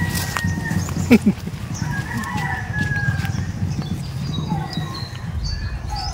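A rooster crowing, one long drawn-out crow about two seconds in, over a steady low rumble.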